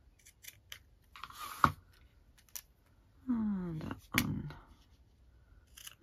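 Small ribbon scissors snipping thin ribbon: a few light clicks, then a sharp snip about one and a half seconds in, and another snip about four seconds in.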